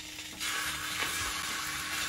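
Beaten egg poured into a hot, oiled rectangular tamagoyaki pan, starting to sizzle about half a second in, then frying with a steady hiss.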